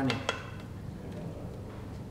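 One light knock of a wooden spoon against a pan just after the start, then a low, steady kitchen hum.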